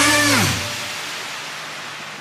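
The final notes of an electronic K-pop dance track glide down in pitch and stop about half a second in, leaving a fading noisy tail as the song ends.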